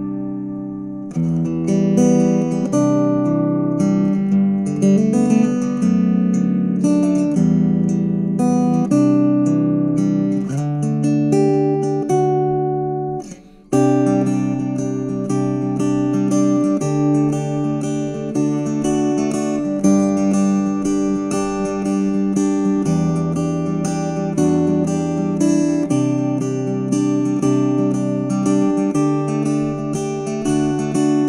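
A steel-strung Donner HUSH-I travel guitar with its mahogany body, played fingerstyle as a solo arrangement: a plucked melody over changing bass notes. It sounds more like an electric guitar with acoustic strings than a typical acoustic guitar. The playing breaks off briefly about halfway through, then carries on.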